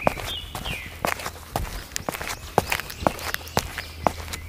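Footsteps sound effect: a steady run of walking steps, about three a second.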